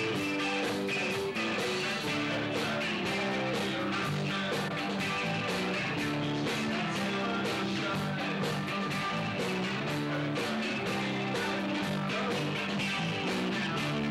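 Live rock trio playing: electric guitar and electric bass over a drum kit with steady cymbal hits.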